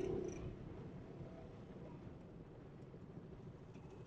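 Faint low rumble of a motorcycle engine as the bike rolls along, growing slightly quieter.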